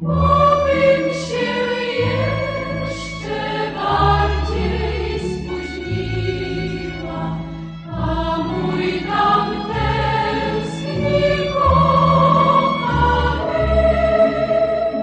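Music: a choir singing held notes over instrumental accompaniment.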